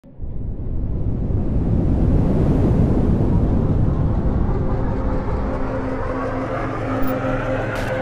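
Logo-intro sound design: a noisy rumbling whoosh starts suddenly and swells over the first few seconds. Steady synth tones come in about five seconds in, with a brief hit near the end.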